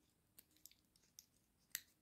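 A few faint, sharp metal clicks from the tools of a Victorinox Handyman Swiss Army knife being opened and snapped shut, the clearest near the end.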